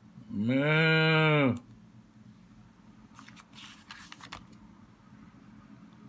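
A person's voice imitating a cow's moo: one long 'Moooo' of a bit over a second, rising slightly in pitch and then falling. A few seconds later come faint rustles of a book page being turned.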